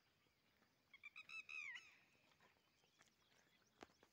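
Faint bird calling: a quick run of short, high, clear notes about a second in, ending in a longer falling note. A single sharp click comes near the end.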